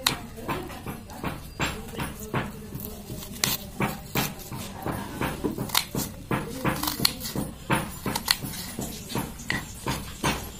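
Kitchen knife chopping an onion on a wooden cutting board: irregular sharp taps, several a second, as the blade cuts through and strikes the board.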